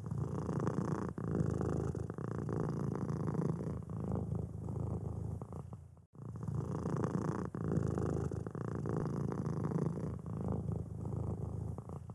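Domestic cat purring, a steady low rumble that cuts out for an instant about six seconds in and then starts again.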